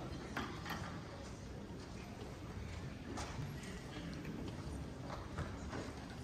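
Faint, irregular clicks and light knocks over a hall's low background rumble, with no music yet: the sounds of an orchestra and audience settling before playing.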